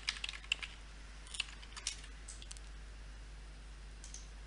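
A few faint keystrokes on a computer keyboard, scattered over the first couple of seconds, then only low steady hiss.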